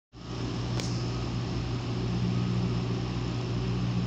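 A steady low machine hum over an even hiss, with one faint click about a second in.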